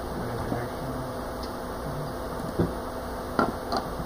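Quiet room noise with a low hum and a few short knocks or clicks, one a little past halfway and two close together near the end.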